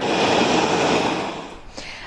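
Steady rushing noise of a jet aircraft on an airport apron, fading out after about a second and a half.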